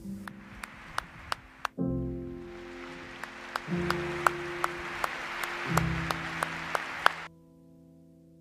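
Slow music of sustained chords, changing about every two seconds, with an audience applauding over it from about two seconds in, sharp single claps standing out; the applause cuts off suddenly near the end, leaving a held chord.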